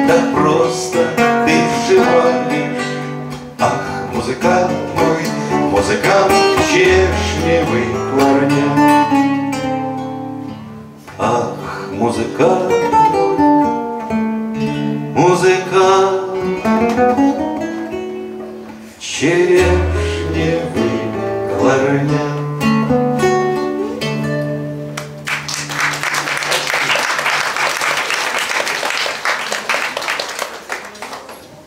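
Two classical (nylon-string) guitars playing together with a man singing a Russian bard song. The song ends about 25 seconds in, and audience applause follows.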